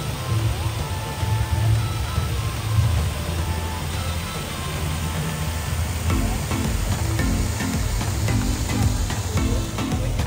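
Music with a beat, mixed with the steady hiss of a fountain's many water jets splashing into its basin.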